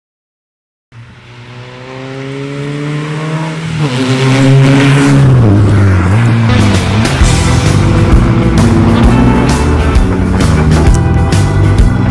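A rally car engine revving and building in loudness, starting about a second in, with pitch changes in its note. Rock music with a steady drum beat joins it from about seven seconds in.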